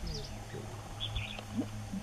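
Wild birds calling: short high chirps and quick falling whistles, with a steady low hum underneath.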